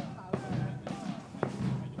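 Marching band playing in the background, with a couple of drum beats.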